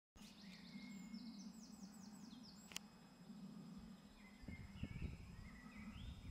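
Faint birdsong: a quick run of about six falling high notes a second or two in, and softer chirping in the second half, over a low steady hum. A single sharp click comes about halfway through, and a few low bumps follow shortly after.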